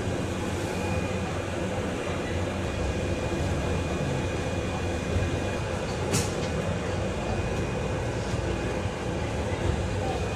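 Volvo BZL electric double-decker bus heard from the upper deck as it moves off from a stop: a steady drive hum and road rumble with a thin, steady high tone. A single sharp click comes about six seconds in.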